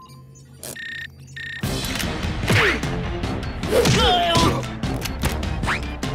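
Cartoon soundtrack: a short steady electronic beep, then from about a second and a half in, loud music with cartoon impact effects and gliding cries.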